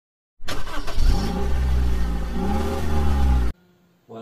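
An engine revving loudly with a deep bass rumble, its pitch rising and falling twice, starting suddenly about half a second in and cutting off abruptly near the end.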